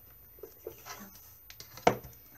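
A pencil and a plastic ruler handled on paper: a few light ticks and rustles, then one sharp knock near the end as the ruler is set down in a new position.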